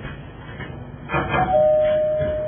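A two-note ding-dong chime, a short higher note and then a lower one that rings on and slowly fades, just after a brief rush of noise.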